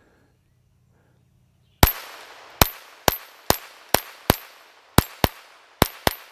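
A .22 LR Ruger Mark IV 22/45 pistol with a Volquartsen compensator fired nine times in quick succession, about two shots a second, starting about two seconds in. Each shot is a sharp crack with a short echoing tail.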